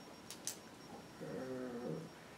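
A man's voice holding one drawn-out hesitation sound, a flat "uhh" lasting under a second, in the second half. Before it come a short pause and a couple of faint mouth clicks.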